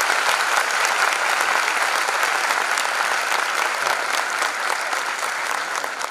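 An auditorium audience applauding steadily, a dense clatter of many hands clapping that eases off slightly near the end.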